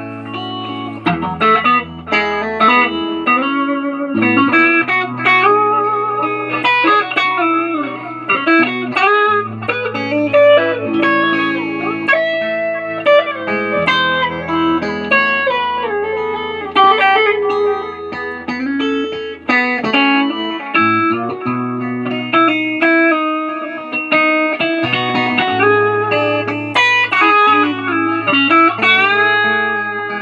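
Telecaster electric guitar with Nuclon magnetic pickups played as a lead line, with string bends and long sustained notes, over held bass notes that change every few seconds.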